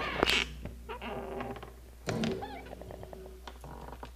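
A door being opened and stepped through: clicks and knocks from the handle and frame, and a short wavering squeak about two seconds in, likely the hinge.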